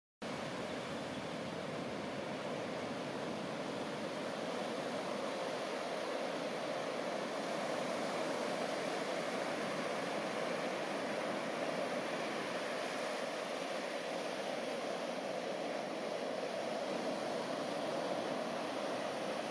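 Ocean surf breaking and washing up the shore: a steady, even rush of noise in which no single wave stands out.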